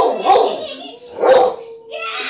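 A dog barking twice, about a second apart.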